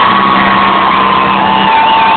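Crowd cheering over loud live concert music, with a few notes held steady, recorded from within the audience.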